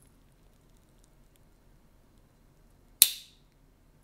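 Spyderco Dragonfly blade on a custom Victorinox Swiss Army multitool snapping shut under its backspring about three seconds in: one sharp metallic click with a short ring. It is the crisp snap of a well-fitted slip joint, which the owner says snaps in fantastically.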